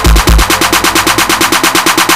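Electronic dance-style music track. About half a second in, the kick and bass drop out, leaving a fast, evenly spaced run of percussion hits, like a build-up before the beat returns.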